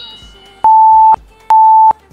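Interval timer app beeping: two long, steady, high beeps about a second apart, marking the end of the countdown and the start of a 30-second exercise interval.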